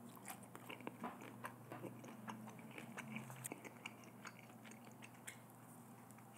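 Faint chewing of a mouthful of sauced fried chicken, with many small clicks scattered irregularly throughout.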